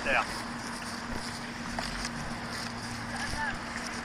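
Steady faint hum under outdoor background noise, with a faint distant voice about three seconds in.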